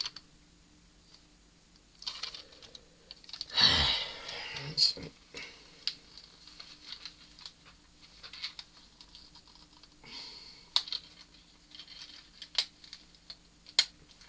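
Small plastic clicks and rattles from a Transformers Generations Goldfire toy car being handled as its stuck door panels are forced loose. The clicks come irregularly throughout, with a louder burst of noise about four seconds in.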